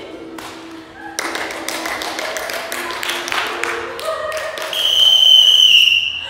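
Stage performers making a dense run of taps and slaps mixed with scattered voices, then a loud, shrill, high-pitched held note lasting about a second near the end.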